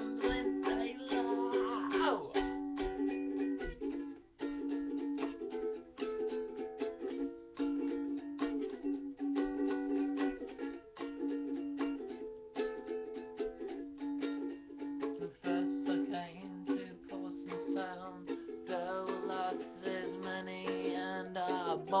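Ukulele strummed in a steady rhythm, an instrumental passage between sung verses of a folk song.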